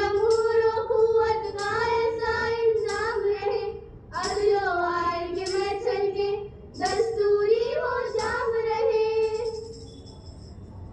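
A group of schoolgirls singing a patriotic Hindustani song together in long, held phrases, with short breaks about four and about seven seconds in, stopping just before the end.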